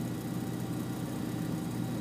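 Vehicle engine idling steadily: a low, even hum with a faint hiss over it.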